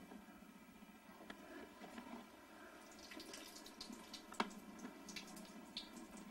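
Faint drips and small splashes of a thin stream of water from a bathroom faucet into a sink, with a cat drinking from it. The ticks become more frequent from about halfway, with one sharper one a little later.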